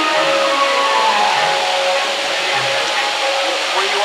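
Steady rushing background noise with faint distant voices over it.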